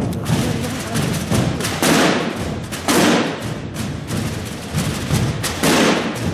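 A Holy Week procession drum corps of rope-tensioned drums beating together: a dense, continuous run of strokes with heavier accented hits about two, three and nearly six seconds in.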